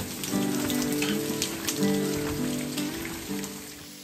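Rain falling and dripping, a steady patter of drops, with background music of sustained chords over it; the music is the louder part.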